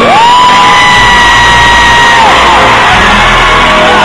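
Loud live hip-hop concert music over an arena sound system, with a heavy bass and a long held high note that glides up at the start and falls away after about two seconds, then returns near the end; a crowd yells along.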